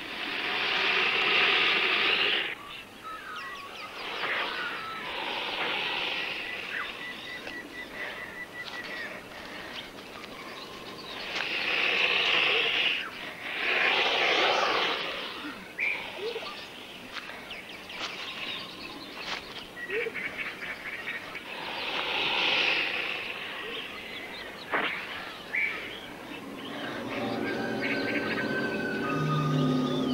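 Bush ambience with bird calls, broken by several loud, harsh bursts of noise, each a second or two long.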